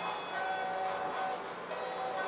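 Cartoon soundtrack played back through a speaker: music of held chord tones that break off and start again roughly every second.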